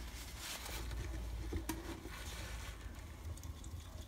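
Faint rubbing and scratching with a few soft clicks: paper kitchen roll wiping dirty colour out of the pans of a metal watercolour paint box, under a steady low room rumble.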